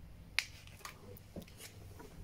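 A sharp click about a third of a second in, then a few fainter clicks and taps, from a hand working and handling a small plastic control keypad, over a low steady hum.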